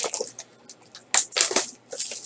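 Plastic wrapping on a trading-card box being torn open by hand, crinkling and crackling. A short rustle, a pause, then a louder crackling tear about a second in, ending with a sharp click.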